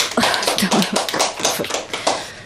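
Scattered applause from a small audience, a few people clapping irregularly.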